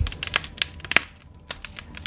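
Logs burning in an open fireplace, crackling with many irregular sharp snaps and pops.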